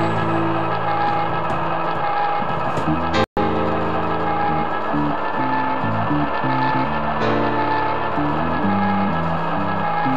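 A rock band playing, with electric guitars to the fore over bass. The sound cuts out completely for a split second about three seconds in.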